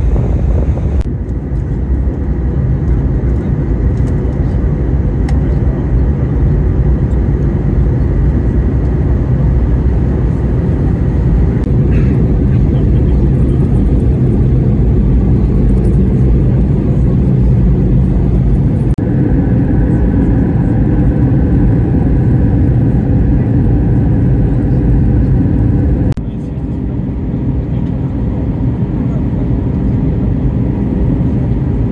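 Airbus A320 cabin noise in flight: a steady low rumble of the CFM56 engines and airflow. Its tone shifts abruptly about a second in, again about two-thirds of the way through, and a few seconds before the end, where separate recordings are cut together.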